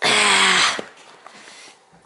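A small dog vocalises once, loudly and for under a second, during rough play with another dog.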